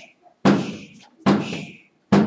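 A person imitating a heartbeat with a heart murmur, the sound of a leaky valve that does not close all the way: evenly spaced beats a little under a second apart, each starting sharply and trailing off in a hissing "shh".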